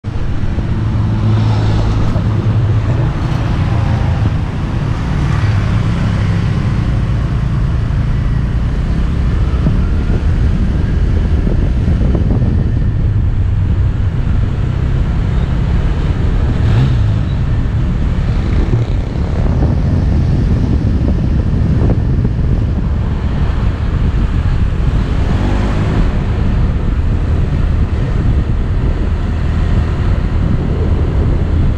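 A motor scooter being ridden along a road: its small engine running under a steady, loud rush of wind on the microphone.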